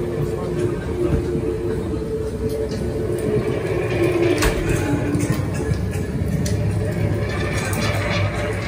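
Ambient background soundtrack of a haunted-house set: a steady low rumble with a few held droning tones, and a single sharp crack about four and a half seconds in.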